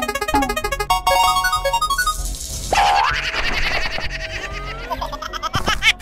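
Cartoon sound effects over background music: springy boings at the start, a rapid run of ticks about a second in, then rising whistle-like glides.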